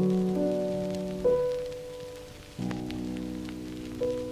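Background music of slow, sustained chords, a new chord struck about every second and a half and each fading away, with a faint crackling hiss underneath.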